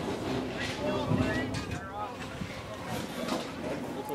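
Distant shouts and calls of voices across an outdoor soccer field during play, over a low wind rumble on the microphone.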